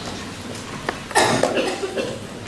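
A single short cough about a second in, preceded by a small click.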